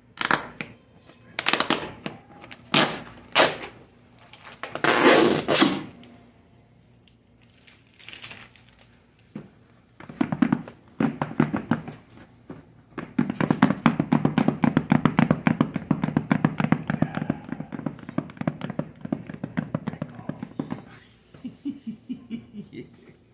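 Packing tape being ripped off a cardboard shipping box: several short, loud rips in the first few seconds, then, after a pause, one long rapid crackling peel lasting about eight seconds.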